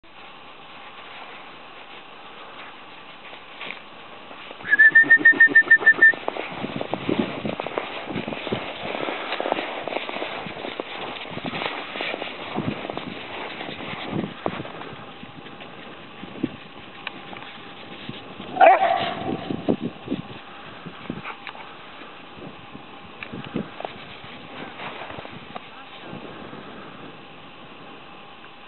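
A trilling whistle blown once, for about a second and a half, followed by scattered short sounds from Rhodesian Ridgebacks at play on snow, with one louder cry that drops in pitch about two-thirds of the way through.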